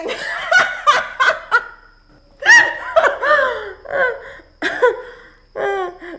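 A woman laughing at a joke, in about five bursts with short pauses between them; the longest burst comes first.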